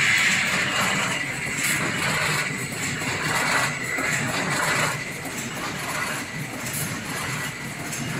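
Automatic corrugated carton folder-gluer stitching machine running: a steady mechanical clatter of belts and rollers feeding cardboard, with surges about once a second in the middle stretch.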